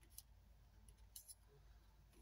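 Near silence with a few faint, short clicks and rustles of small paper craft pieces being handled by fingers: one just after the start and a pair about a second in.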